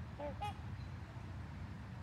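Swans calling: two short, faint calls in quick succession right at the start, over a steady low background rumble.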